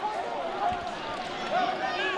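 Distant shouting and cheering of footballers celebrating a goal, over the steady background noise of a sparsely filled stadium.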